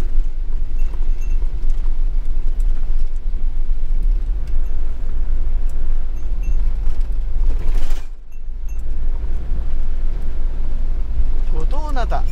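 Steady low rumble of a camper van's engine and tyres on a wet road, heard from inside the cab, with a brief louder rise about eight seconds in followed by a short dip.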